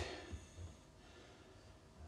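Near silence: room tone, with a couple of faint low bumps about half a second in.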